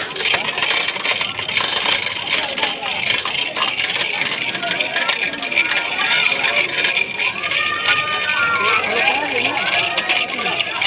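Crowd noise: many people talking and calling out at once in a steady din, with a few raised voices standing out near the end.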